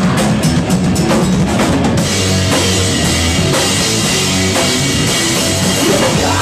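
Loud live rock band playing: rapid, driving drumming leads through the first two seconds, then the full band of distorted guitar, bass and drums carries on.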